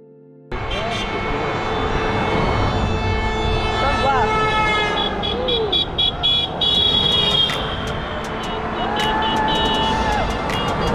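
Passing cars tooting their horns over road traffic noise, with people calling out; the sound cuts in sharply about half a second in, and a long steady horn blast sounds near the end.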